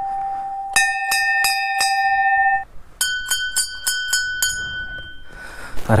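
Hanging brass temple bells rung by hand. A lower-pitched bell is struck about six times in quick succession. About three seconds in, a higher-pitched bell is struck about seven times in a rapid run and rings on briefly.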